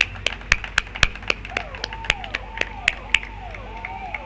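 Scattered hand clapping, a few sharp claps a second. From about a second and a half in, a faint vehicle siren comes in, its pitch sweeping up and down about twice a second as the enforcement vehicles set off.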